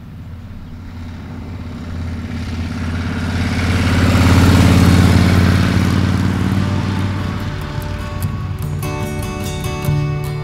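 A motorcycle engine running, growing louder to a peak about halfway through and then fading away like a bike going past. In the second half, guitar music with strummed chords comes in over it.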